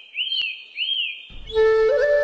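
A bird's whistled call, each note rising then falling, repeated about every half second. About a second and a half in, a flute begins a slow, held melody.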